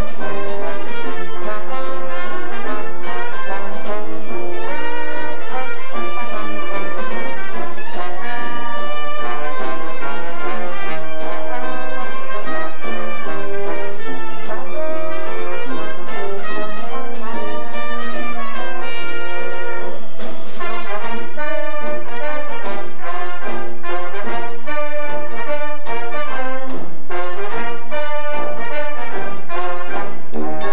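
Student Dixieland jazz band playing: trumpets and trombones carry the tune over tuba, drum kit and piano. About twenty seconds in, the notes turn short and punchy.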